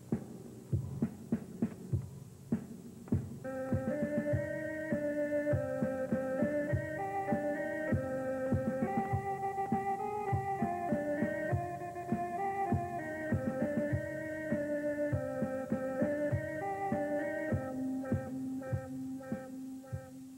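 Recorded cue music: a percussive beat alone at first, then a melody comes in about three and a half seconds in and carries on over the beat.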